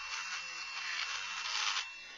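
Cordless Dremel Stylus rotary tool grinding into thin white plastic from behind: a steady high whine over a grinding hiss, cutting off shortly before the end. It is thinning a model car body to make rust-through holes.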